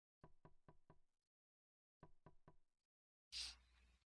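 Faint knocking: four quick knocks at about four a second, a pause, then three more, followed near the end by a brief hissing burst.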